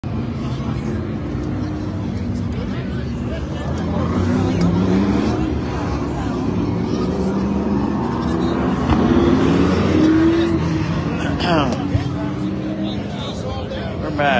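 Limited late model race car engines running around a short oval at moderate speed, a steady drone with the pitch of individual cars sliding up and down as they pass. A voice is heard briefly near the end.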